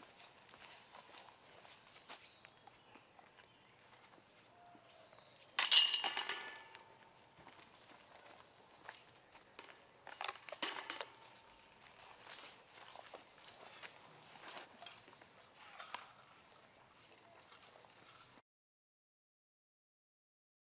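Two discs striking the chains of a disc golf basket about four and a half seconds apart, each a sudden metallic jangle of chains that rattles for about a second. The sound cuts to silence near the end.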